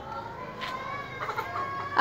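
Faint chicken calls, among them one drawn-out call held at a steady pitch for about a second, then a few shorter ones.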